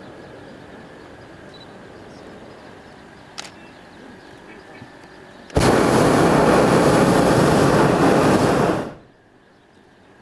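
Hot-air balloon's propane burner firing in one loud blast of about three and a half seconds, cutting in suddenly a little past halfway and dying away quickly. Before it there is only a low, steady background with one short click.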